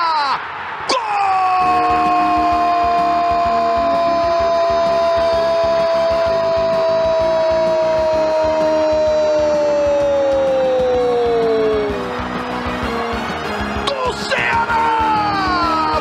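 A Brazilian TV commentator's long drawn-out goal cry, one note held for about eleven seconds that slides down at the end, followed near the end by shorter shouts, over background music.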